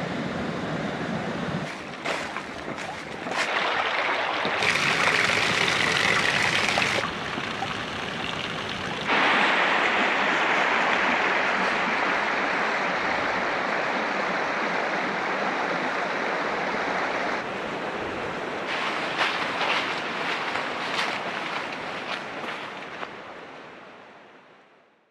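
Running water of a woodland stream, a steady rush heard in several clips cut together, so its loudness and brightness jump at each cut; it fades out near the end.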